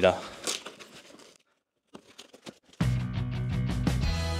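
Packaging being handled, crinkling and rustling for about a second. Then a short silence with a few faint clicks, and background music with a steady beat starts suddenly near the end.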